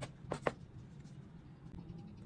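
Chef's knife chopping chillies on a plastic cutting board: three quick knocks of the blade on the board in the first half second, then the chopping stops.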